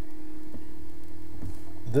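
A steady low electrical hum with faint background noise, and two faint ticks in the middle.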